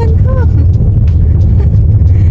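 Steady low road and engine rumble inside a moving car's cabin, with a brief bit of a woman's voice early on.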